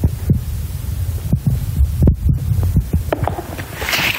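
Close-miked chewing of a snack: about ten soft, irregular crunches and mouth clicks over a steady low hum.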